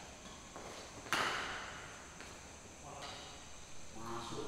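A badminton racket strikes the shuttlecock with a sharp crack about a second in, echoing briefly in the hall. A few fainter taps of play come before and after it.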